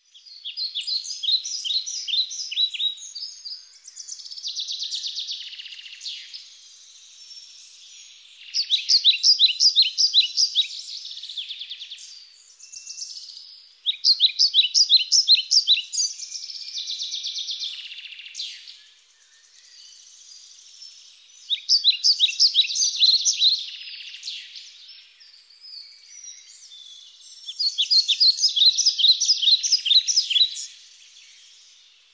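A songbird singing: about six high-pitched phrases of rapid repeated notes, each two to four seconds long, coming every five or six seconds.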